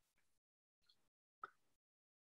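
Near silence, with one faint short click about one and a half seconds in.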